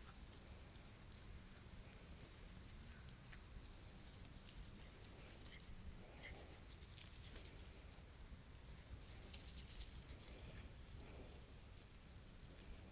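Near silence: faint outdoor ambience with a low rumble and scattered faint light clicks, and one sharper click about four and a half seconds in.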